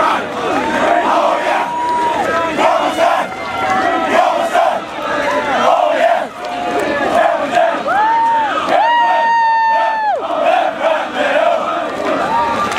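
A crowd of voices yelling and cheering, with long drawn-out shouts rising above the din: one held for about a second shortly after the start, and the longest and loudest about nine seconds in.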